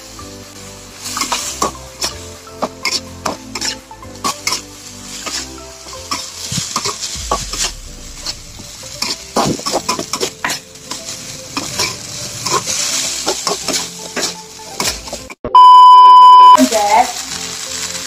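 Rice vermicelli stir-frying in a wok: a steady sizzle with a metal spatula scraping and clicking against the pan. Near the end a loud, steady beep sounds for about a second.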